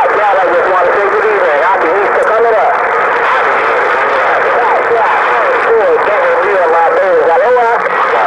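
Distant radio voices coming through a President HR2510 transceiver's speaker: unintelligible and overlapping, squeezed into a narrow, tinny band over steady static hiss.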